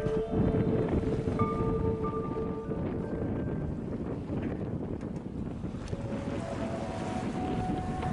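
Wind rumbling on the microphone over choppy water, with a few soft held musical notes in the first three seconds and again near the end.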